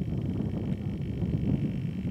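Wind buffeting the microphone: a loud, irregular low rumble that swells up just before and keeps gusting.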